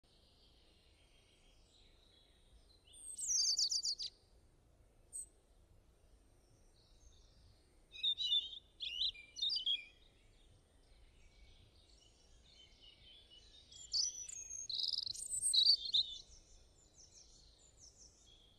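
Birds chirping in short, high bursts: one group about three seconds in, another around eight to ten seconds, and a longer, louder run around fourteen to sixteen seconds, over a faint steady background hiss.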